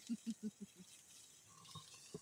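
Soft laughter trailing off in a quick run of short pulses over the first second, then a faint, quiet background.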